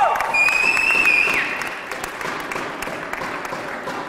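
An audience applauding, the clapping loudest at first and then slowly fading. A single high-pitched cheer of about a second rises above it just after the start.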